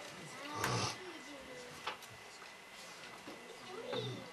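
A man's long sigh, breathy and voiced, close to the microphone about half a second in, then a single sharp click a little before two seconds in, and a short vocal sound near the end.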